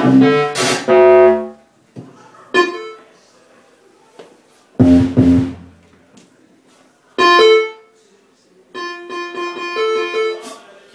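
Live electronic music: loud, separate bursts of keyboard-like synthesized chords, each starting and stopping abruptly, with short near-silent gaps between them, about five in all.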